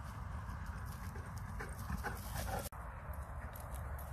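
A mastiff galloping through grass toward the microphone, its paws thudding in quick strokes, over a steady low rumble of wind on the microphone. The sound drops out for an instant about two-thirds of the way through.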